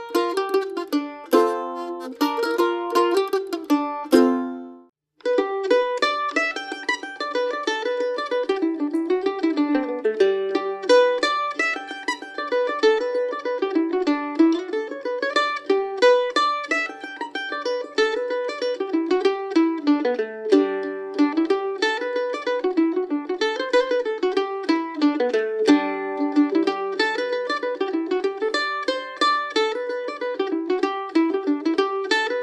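Mandolin being picked: a few chords and notes at first, then a brief break about five seconds in, after which a fast bluegrass mandolin tune of rapid picked notes runs on.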